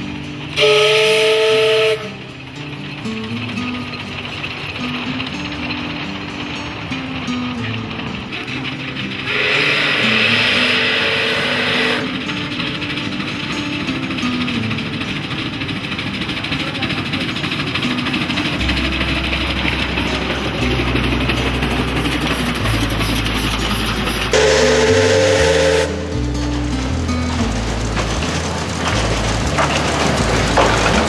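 Narrow-gauge steam locomotive whistle blowing three times: a short blast about a second in, a longer, hissier one around ten seconds in, and another short blast near the end. Throughout there is background music, which gains a bass line about two-thirds of the way through.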